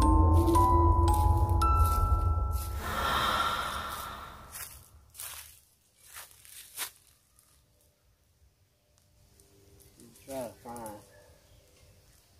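Background music with bell-like mallet notes ends about three seconds in with a brief swell of noise. Faint footsteps crunch and crackle in dry fallen leaves for a few seconds. Near the end come two short sounds with a pitch that bends up and down.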